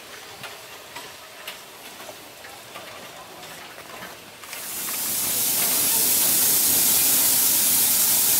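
Narrow-gauge steam train moving off: light clicks and clanks at first, then about four and a half seconds in a loud steady hiss swells up and holds.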